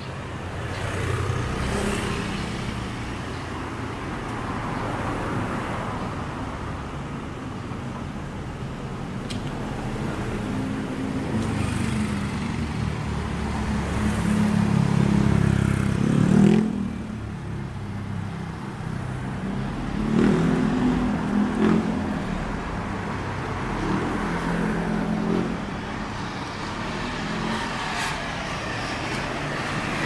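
Road traffic on a city street: cars and motorbikes go by one after another, each engine swelling and fading. The strongest pass builds over several seconds and drops away suddenly about halfway through, as a motor scooter rides by close. More vehicles pass a few seconds later.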